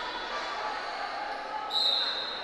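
Murmur of voices in a large sports hall, then near the end a sudden high, steady whistle blast starts; it is the loudest sound, typical of a wrestling referee's whistle.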